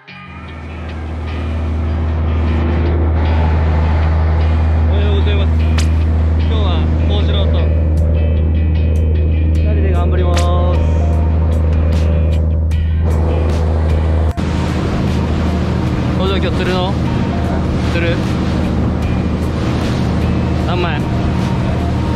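A small fishing boat's engine running steadily at speed, with wind and water rushing past the hull. Voices call out over the engine noise, and the sound jumps at a cut about 14 seconds in.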